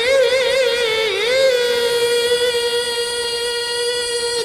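Male Quran reciter chanting in a high voice into a handheld microphone: a wavering, ornamented melisma for about the first second and a half, then one long note held steady to the end.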